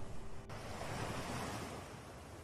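Ocean surf: a wave washes in about half a second in, swells, then eases off. Faint held music tones stop abruptly just before it.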